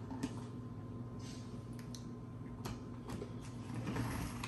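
A few light clicks and a brief rustle of plastic snack containers being handled, over a steady low hum.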